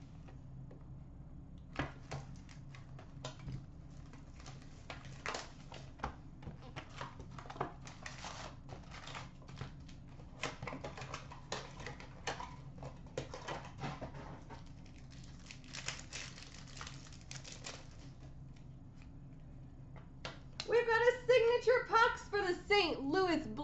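Plastic wrapping and packaging crinkling and tearing, with many light irregular clicks and taps, as a sealed box of hockey-card packs is unwrapped and opened by hand, over a low steady hum.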